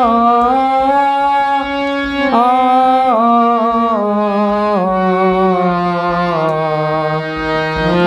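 Harmonium playing held notes with a voice singing along on an open 'aa' vowel (aakar riyaz), the notes changing in steps and falling one by one through the second half.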